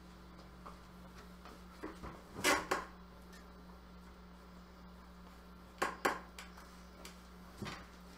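A few short knocks and clatters of handling while a mandolin is fetched, about two and a half seconds in and again about six seconds in. Under them runs a steady low electrical hum.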